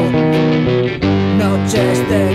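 Oi! punk rock song in an instrumental gap between vocal lines: electric guitars and bass playing held chords, changing about a second in.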